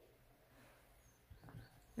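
Near silence: room tone, with a few faint short sounds near the end.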